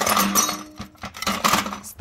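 Scrap metal parts clinking and clattering in a steel bucket as a hand rummages through them, in several irregular bursts of rattling.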